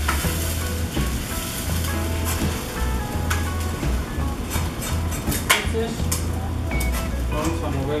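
Chile adobo sizzling as it is strained into a hot clay pot, a spoon scraping and knocking against the wire mesh strainer with a few sharp clicks, the loudest about five and a half seconds in. Background music plays under it.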